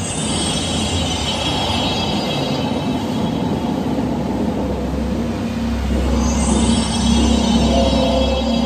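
Loud music and sound effects from an indoor dark ride, with a low rumble from the ride growing stronger about halfway through.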